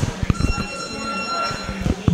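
A boxing gym's round timer sounding a steady high buzzer tone for about a second and a half, over scattered dull knocks from training.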